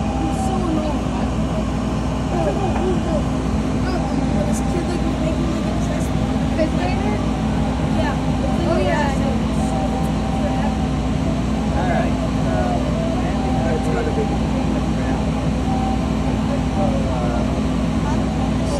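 Laser cutter running while it cuts, a steady drone with a low hum throughout. Indistinct voices chatter over it.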